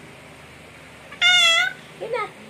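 An 8-month-old baby's single high-pitched squeal, about half a second long, a little over a second in.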